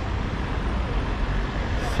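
City street traffic noise: a steady low rumble of engines and tyres, with a car driving past close by near the end.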